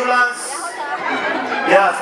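Voices talking, several at once: chatter.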